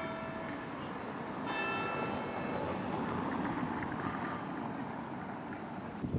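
A church bell ringing: an earlier stroke dies away at the start, and a fresh stroke about a second and a half in rings out and fades over about a second, over steady street background noise.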